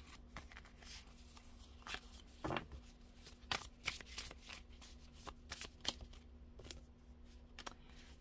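A deck of oracle cards being shuffled by hand: an irregular run of soft card flicks and slaps, over a faint steady hum.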